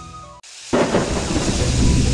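Soft music fades out, and about three-quarters of a second in a loud rumble with a rain-like hiss cuts in suddenly and continues, like thunder in a storm, with a few faint music tones over it.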